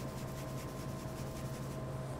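Shaker of coarse black-pepper-and-salt rub being shaken over pork spare ribs: a faint, rapid granular rustle over a steady low hum.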